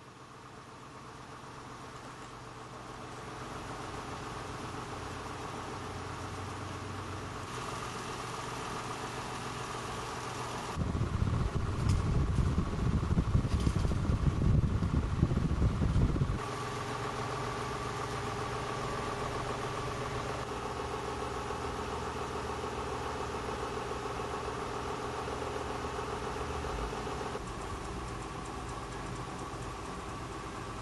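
Electric fan running with a steady mechanical hum that fades in over the first few seconds. For about five seconds in the middle it becomes a much louder low rumble, and the hum shifts slightly in level several times.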